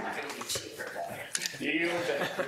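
Speech only: people talking around a meeting table, the words not made out.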